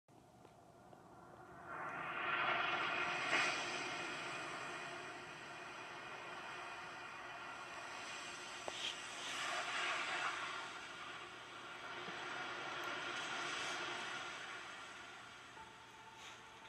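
Animated film soundtrack heard through a television's speaker: surging, crashing sea waves and rushing wind, swelling up about two seconds in and again in two more surges, with faint music underneath.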